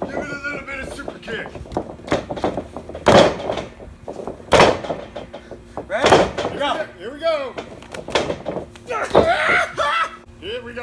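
Heavy thuds of bodies or feet landing on the mat of a backyard wrestling ring, three of them about a second and a half apart, with chatter and laughter between.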